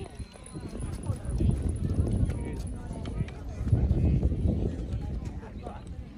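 Indistinct voices of people talking, over uneven footsteps and low rumbling noise from a phone being carried on a walk. The rumbling swells twice, once about a second and a half in and again around four seconds.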